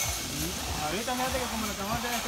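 Quiet, indistinct speech from a person a little way off, over steady outdoor background noise.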